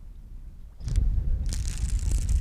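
Wind buffeting the microphone, coming in about a second in as an uneven low rumble, with a crackling hiss over it from about halfway through.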